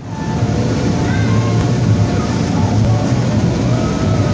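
A ride down an inflatable slide: a loud, steady rush and low rumble as the body and camera go down the vinyl, with music faint underneath.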